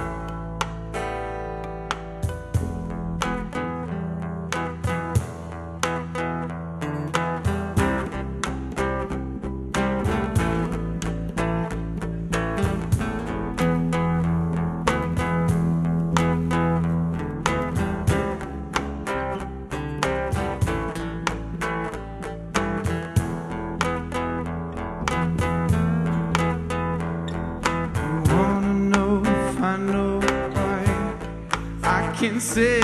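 Live acoustic band playing an instrumental passage: guitar picked in quick, dense notes over a sustained bass line.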